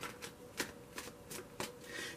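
Tarot deck being shuffled by hand: a quiet series of short card slaps, about three a second.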